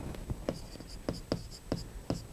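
Stylus pen writing on the surface of an interactive display board: a run of light taps and short scratchy strokes as the letters are formed.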